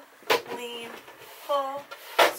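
A person's voice: two short vocal sounds without clear words, the first starting with a sharp click.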